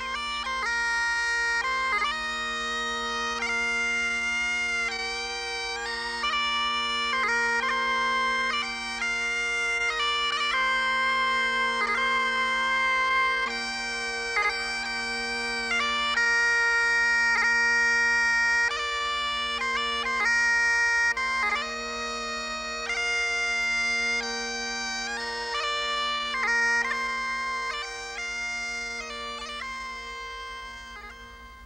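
Scottish bagpipes playing a melody on the chanter over steady, unbroken drones, the tune moving in held notes with quick grace-note flourishes between them.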